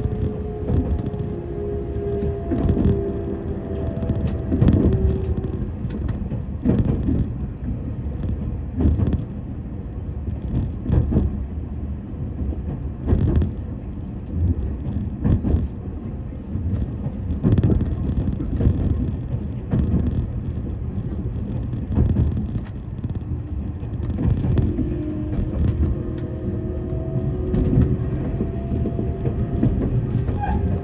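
Electric train running, heard from inside the carriage: a steady rumble of wheels on rail with irregular knocks. A steady whine sounds over it for the first few seconds and comes back near the end.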